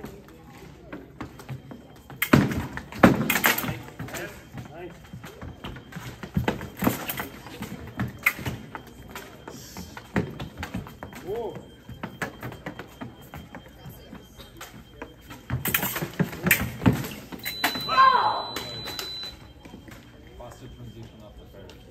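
Fencing bout on a metal piste: rapid footwork stamps and blade clicks, with two louder flurries of action about two seconds in and about sixteen seconds in. Near the end, a steady electronic beep from the scoring box lasts about two seconds, signalling a touch, with a fencer's shout over it.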